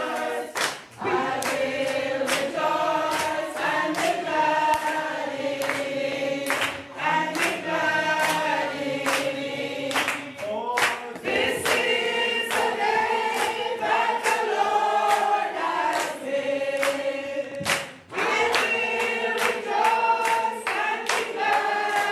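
A congregation singing together, led by a woman singing into a microphone, with hands clapping steadily in time.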